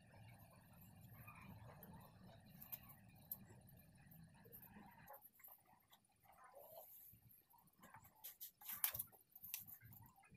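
Near silence: a faint low hum that stops about halfway, then scattered faint clicks and rustles of hands handling craft pieces and popsicle sticks, clustered near the end.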